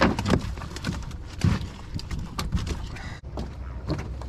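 A cast net being thrown from the bow of a small boat: a run of irregular knocks and thumps on the deck, over wind noise on the microphone.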